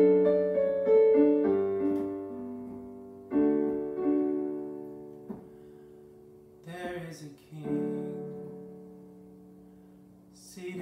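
Casio Privia digital piano playing slow chords and single notes, each struck and left to ring and fade. A brief vocal sound from the player comes about two-thirds of the way in.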